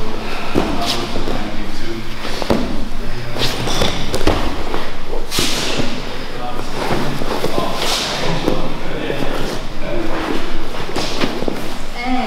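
Brazilian jiu-jitsu grappling on mats: repeated thuds and scuffling as bodies and cotton gis shift and hit the mat, with voices at times in between.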